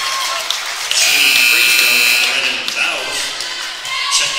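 A gym scoreboard horn sounds one harsh, steady buzz for about a second and a half, over crowd noise in the gym.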